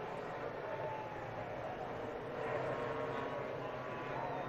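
Distant IndyCar engines droning steadily as the field circulates under caution, heard as a wash of track ambience with a faint engine note that dips slightly in pitch about a second in.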